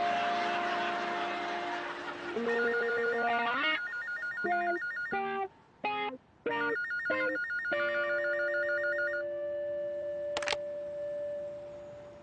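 Payphone ringing with a fast electronic warble in two bursts, mixed with short musical notes and a long held tone. The noise of a passing truck fades out over the first two seconds.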